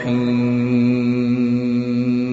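A chanting voice holds one long, steady note after a run of ornamented, wavering pitches, as in a chanted recitation.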